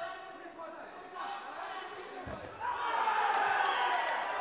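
Amateur boxing bout heard from ringside: hall ambience with a dull thud a little over two seconds in, then loud shouting voices from around the ring for the last second or so.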